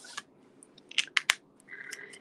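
Light handling noise and a few sharp plastic clicks about a second in, from a small ink pad being worked across and lifted off a clear plastic embossing folder.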